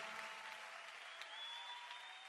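Faint applause slowly dying away, with a few soft held instrument notes lingering underneath.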